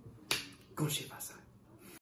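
A paper packet being handled: a sharp snap about a third of a second in, then a second, softer cluster of crackling a little later.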